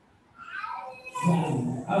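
A man's voice over a microphone: after a short pause, a drawn-out vocal sound that glides in pitch, running into speech near the end.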